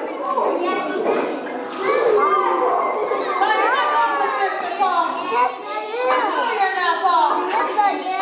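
A roomful of young children talking and calling out at once, many high voices overlapping into a steady chatter with no single voice clear.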